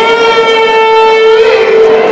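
A small hand-held horn blown into a microphone, sounding one long steady note through the public-address system. The note's upper overtones fade about a second and a half in.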